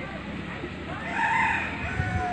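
A rooster crowing, starting about a second in with one long call.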